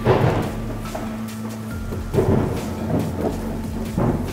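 Thunderstorm sound effect: a clap of thunder rumbling in suddenly at the start and another about two seconds in, over steady rain, with a steady low music drone underneath.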